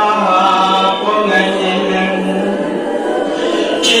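A marsiya, a Shia elegy, chanted without instruments by a male reciter, drawn out in long held notes.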